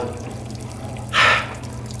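A short breathy sound from one of the men, a sharp breath or gasp, about a second in, over a steady low hum.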